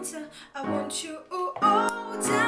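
A female voice singing a pop melody over chords played on an electronic keyboard with a piano sound. New chords are struck about half a second in and again near the end.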